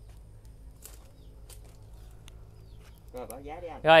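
Quiet outdoor background with a steady low hum and a few faint ticks. A man speaks briefly near the end.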